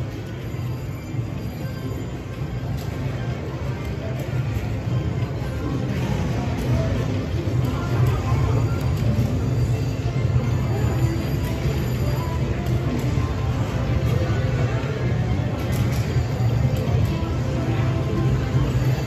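Green Machine video slot machine's game music and spin sounds playing over a steady casino din as the reels spin again and again.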